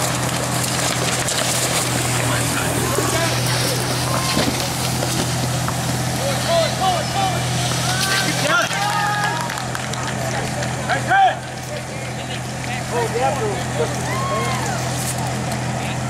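Spectators shouting and cheering in short rising-and-falling yells over a steady low engine hum and the hiss of a fire hose spraying water, with one brief loud burst about eleven seconds in.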